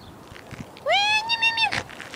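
A domestic cat meowing once, a call of nearly a second that rises in pitch and then holds.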